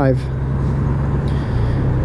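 2018 Honda Gold Wing's flat-six engine droning steadily at highway cruise, mixed with road and wind noise as heard from the bike itself.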